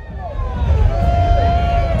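Deep sub-bass from the dub sound system's speakers, with faint voices over it and one drawn-out vocal note about a second in.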